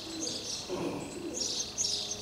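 Birds chirping: short, high calls repeating several times within two seconds, with some lower notes beneath them.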